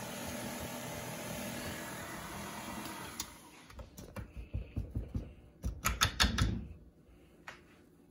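KitchenAid stand mixer running steadily, its ice cream maker dasher churning ice cream thickened to soft serve. About three seconds in the motor sound stops, and a run of plastic knocks and clatters follows as the dasher is lifted out of the bowl.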